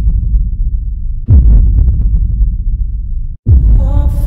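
Deep bass booms in an edited intro, each starting suddenly, dropping in pitch and fading: one about a second in and another near the end, just after a brief cut to silence, with faint ticking above.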